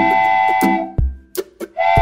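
Cheerful background music for children: a held chord over a bass beat that breaks off about a second in, a short near-silent gap with a couple of light clicks, then the tune starting again near the end.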